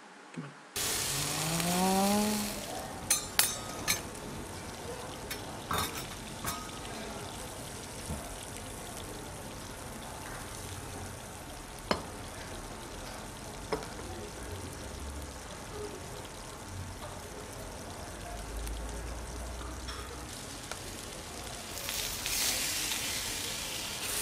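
Okonomiyaki sizzling on a hot teppan griddle: a steady frying hiss, with a few sharp clicks of utensils against the griddle.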